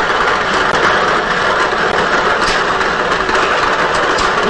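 Lottery ball draw machine running: a steady rush of mixing air and tumbling balls in the clear globe, with a few light clicks of balls striking.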